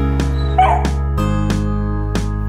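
Background music plays throughout, and about half a second in a beagle gives one short, wavering yip.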